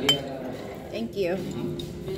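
A single sharp clink of tableware set down on the table right at the start, with a short ring after it, and a fainter tick near the end.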